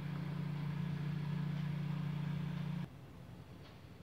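A steady low mechanical hum that cuts off abruptly about three seconds in, leaving faint background noise.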